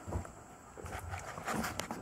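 Footsteps on old wooden floorboards: a few irregular thuds and small knocks.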